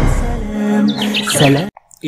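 A few quick bird chirps about a second in, over steady background music. The sound cuts off abruptly just before the end.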